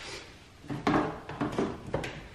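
A few soft knocks and clatters of kitchen handling, with a cupboard or drawer being opened to fetch a seasoning container. They fall in a cluster about a second in and again near the end.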